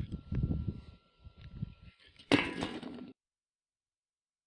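Handling noise from an old rusty wrought-iron frame (a fireplace or bed-head piece) being picked up and moved, with a sharp metal clatter about two and a half seconds in. The sound then cuts off abruptly.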